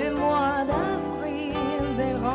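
Live band playing a slow ballad: an electric bass holds the low end under a sustained melody line with vibrato.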